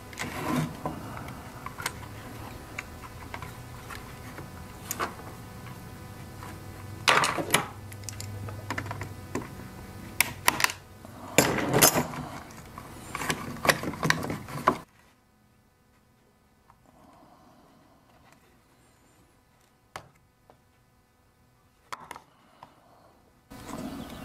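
A screwdriver working a screw out of a small two-stroke carburetor on its plastic air box, with scattered clicks and knocks of the parts being handled over a steady background hum. About 15 seconds in, the hum cuts off suddenly, leaving near silence with a few faint clicks.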